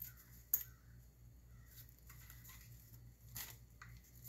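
A zippered nylon knife pouch being handled and unzipped: a sharp click about half a second in, then faint scraping and rustling, with a short louder scrape near the end.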